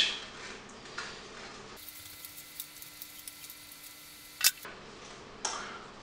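Scissors snipping through a sheet of photocopy paper in small, irregular cuts, with one sharper click about four and a half seconds in.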